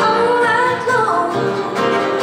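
A woman singing live over a strummed acoustic guitar; her held note slides down in pitch about a second in.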